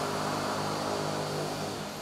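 Steady low engine hum, getting quieter near the end.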